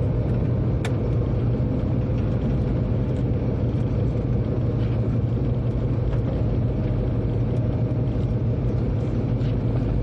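A train running along the track, heard from the driver's cab as a steady, even rumble, with one faint click about a second in.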